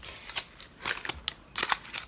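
Paper cupcake liner crinkling and a chenille stem rustling as they are handled and twisted together, a series of short, sharp crackles.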